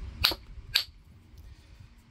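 Two short, sharp clicks about half a second apart, from the stone and the copper boppler being handled together, then faint handling noise.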